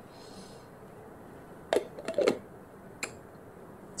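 Quiet room with a few sharp clicks and knocks from handling a plastic water bottle: one under two seconds in, a short cluster just after, and one more near the end.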